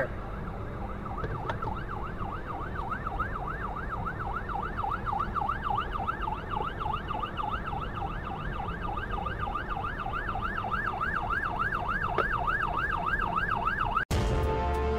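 Emergency vehicle siren in a fast wail, about three rises and falls a second, getting louder as it approaches, over a low steady rumble.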